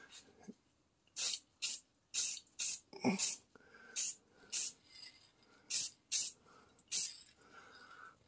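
Aerosol spray can of Krylon Rust Tough gloss enamel paint hissing in about ten short bursts, each well under half a second, with pauses between them, as a light coat of paint is laid on.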